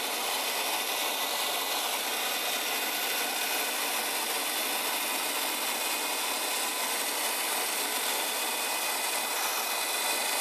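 RoboCut vacuum haircutter running steadily, a constant even noise from its built-in vacuum motor, as the clipper head is worked through the hair and the cuttings are sucked up the hose.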